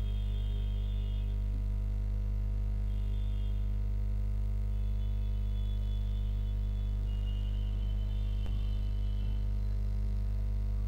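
Steady low electrical hum with its overtones, typical of mains hum picked up by the recording setup, with faint broken high-pitched tones now and then.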